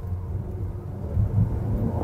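Low engine and road rumble heard inside the cabin of a Jetour X70 crossover as it is driven and accelerated, growing a little louder about a second in.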